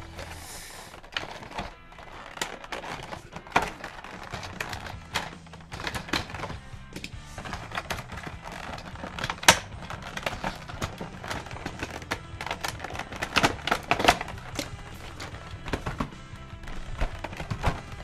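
Hands handling a clear plastic packaging tray, giving irregular crackles, clicks and knocks, with one sharp click about nine and a half seconds in. Background music plays underneath.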